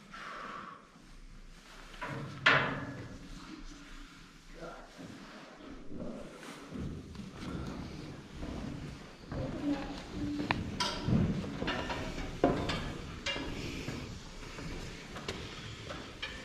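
Footsteps on a metal spiral staircase with grated treads: a scatter of knocks and thuds, one sharp knock a few seconds in and more of them in the second half.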